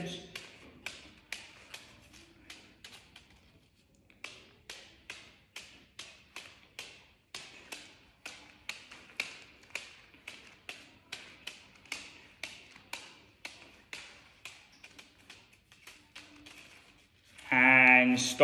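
An open hand batting a scrunched-up paper ball upward over and over, a soft tap about two or three times a second. The taps break off briefly about three and a half seconds in, then carry on steadily.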